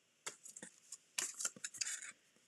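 Patterned paper and clear plastic cutting plates being handled and slid into place on a die-cutting machine's platform: a few short rustles and scrapes, busiest in the second half.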